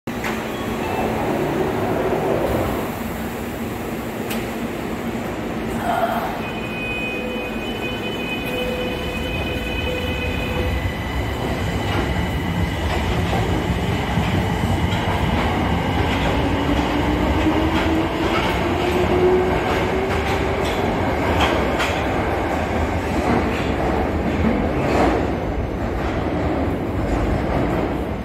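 Tokyo Metro Marunouchi Line subway train pulling out of the station, with wheel and rail rumble and a motor whine that rises in pitch as it speeds up.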